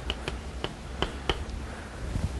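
Chalk clicking against a blackboard during writing: about six short, sharp taps at uneven spacing, over a low steady room hum.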